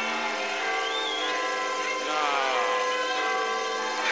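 A steady drone of several held tones, with a brief wavering pitch glide about a second in. A man's voice says "No" about two seconds in.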